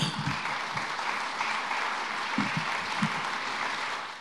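An audience applauding, a steady spread of many hands clapping, with a man clearing his throat right at the start.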